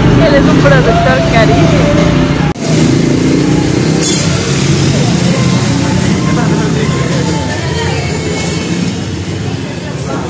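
Indistinct overlapping voices and chatter in a busy restaurant over a steady low background hum. The sound cuts off abruptly about two and a half seconds in, then the chatter resumes.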